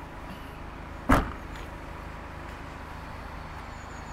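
Boot lid of a BMW 5 Series saloon being shut: one solid thud about a second in.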